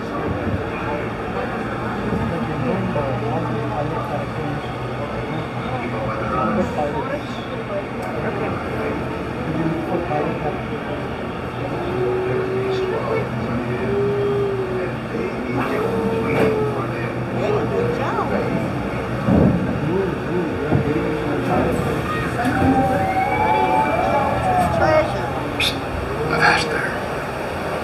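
Indistinct chatter of riders in a boat on a dark ride's indoor waterway, over a steady low hum; a few sliding tones rise and fall near the end.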